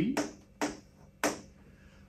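Three short, sharp taps of a pen against a standing writing board as letters are written on it, about half a second apart.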